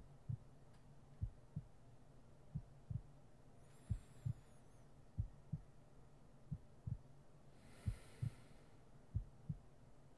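A slow, steady heartbeat: paired low lub-dub thumps, about one beat every 1.3 seconds, over a faint steady low hum. A soft hiss comes twice, about four and eight seconds in.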